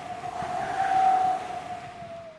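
Outro logo sound effect: a steady held tone under a hissing whoosh that swells and fades twice.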